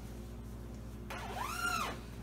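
The zipper of an Enlightened Equipment Conundrum down quilt is unzipped in one quick pull about a second in. Its buzz rises and then falls in pitch as the pull speeds up and slows.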